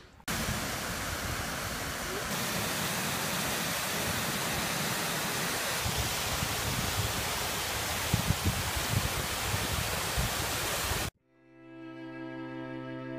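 Water rushing steadily down a small rocky cascade, a dense even roar with some low uneven rumble. It cuts off abruptly about a second before the end, and soft bowed-string music with cello swells in.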